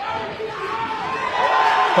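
Boxing crowd cheering and shouting, growing louder over the two seconds: the fans celebrating a landed left hand.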